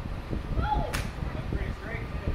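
A single sharp crack about a second in, a golf club striking a ball, over a low rumble.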